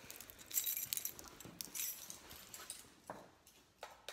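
A pet dog's noises among short bursts of light jingling and rustling.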